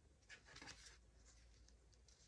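Faint rustling and sliding of old book-page paper handled and pressed by hand, strongest about half a second in.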